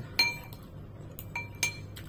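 A metal fork and a ceramic soup spoon clinking against a bowl while scooping noodles: a sharp ringing clink just after the start, a few lighter taps, then another ringing clink about a second and a half in.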